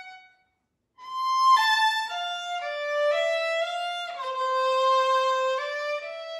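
Violin played alone with the bow: a note dies away, and after about half a second of silence a new phrase begins, moving note by note before settling on a longer held note.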